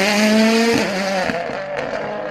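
Racing car engine held at high revs, its pitch dipping sharply for a moment just before one second in and then coming back, growing quieter in the second half.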